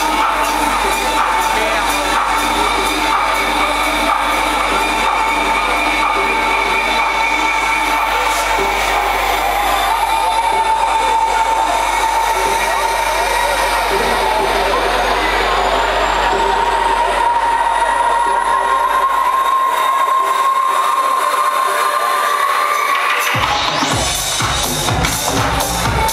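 House music played loud over a club sound system, in a breakdown: held synth chords while the kick drum and bass fade away, then a sweep rising steeply in pitch near the end as it builds back toward the drop.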